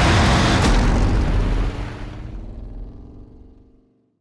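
A car engine in film sound effects, running loud for the first second and a half, then fading away over the next two seconds to silence.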